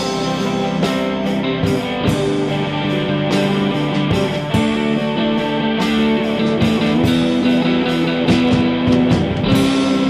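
Rock song in an instrumental passage with no vocals, led by guitar.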